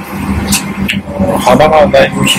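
Steady airliner cabin noise with a constant low hum, a couple of short clicks in the first second, and a voice speaking Japanese in the second half.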